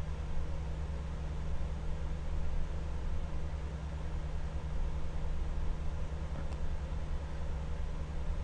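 A steady low hum, with a faint click about six and a half seconds in.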